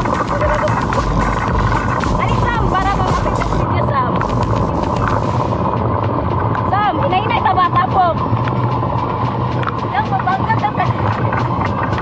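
Wind and rolling noise rumbling on the camera's microphone during a fast downhill luge ride on a wet track, heaviest in the first half, with riders shrieking and calling out over it.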